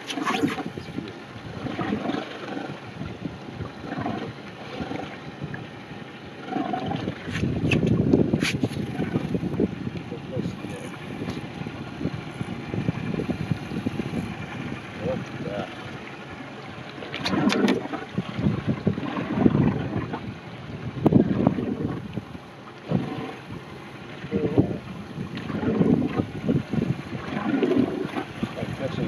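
Wind buffeting the microphone and small waves slapping a skiff's hull, with low, indistinct voices now and then.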